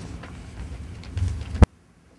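Low rumble of hall noise picked up through the podium microphones, with a few faint knocks, cut off by one sharp click about a second and a half in, after which only a faint hiss remains: an abrupt audio edit cut.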